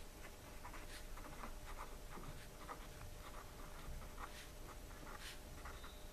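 A pen writing by hand on paper: faint, irregular scratching strokes.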